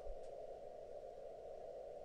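Faint steady room tone, a low even hiss of background noise, with no distinct sound in it.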